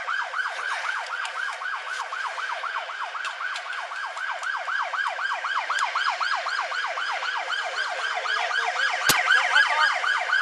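Police car siren in a fast yelp, wavering about six times a second without a break. A single sharp click cuts through about nine seconds in.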